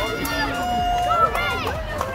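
Voices: a race announcer's long, drawn-out call at the finish, with other people's voices around it.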